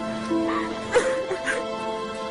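Slow background music with long held notes, with short voice-like cries from the footage over it; the sharpest, loudest one comes about halfway.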